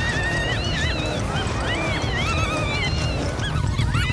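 Cartoon background music with a steady low pulsing beat, overlaid with many short, high, squeaky calls that rise and fall in pitch.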